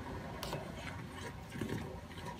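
A metal spoon clinking and scraping against the inside of a stainless steel pot while stirring chopped aloe vera in water, with one sharp click about half a second in.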